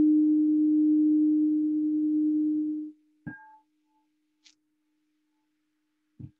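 A meditation bowl bell rung to open the chanting: one low, steady ringing tone with higher overtones that cuts off abruptly about three seconds in. A second, lighter strike follows just after and dies away quickly.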